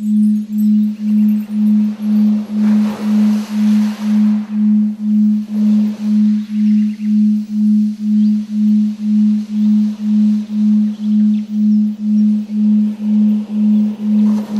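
Low, steady synthesized tone pulsing on and off about twice a second, as in a binaural-beat or 'frequencies' track, with a faint hiss swelling and fading a few seconds in.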